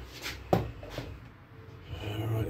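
A few light knocks and clicks, as of something being handled or set down on a table. The sharpest comes about half a second in and a smaller one about a second in.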